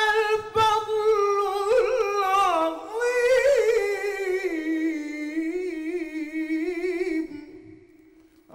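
A man chanting a religious ibtihal unaccompanied, singing one long phrase of held notes with quick wavering ornaments, which fades out about a second before the end.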